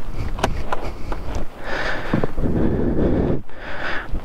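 Wind buffeting the microphone in a low, uneven rumble, with a few light clicks in the first second and a half.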